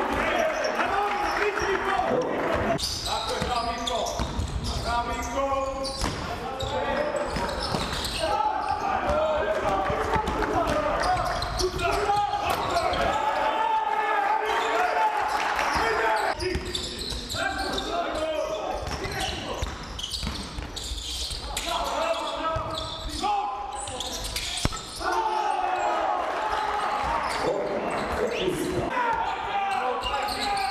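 Live basketball game sound in a large, echoing sports hall: a ball bouncing on the hardwood court, with voices calling out on and around the court.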